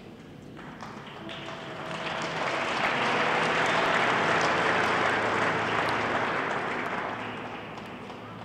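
A large congregation applauding: the clapping swells over the first few seconds, holds, then fades away.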